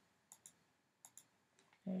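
Faint clicks from working a computer's pointer controls: two quick double clicks, a little under a second apart, as settings are picked in Mac Preview.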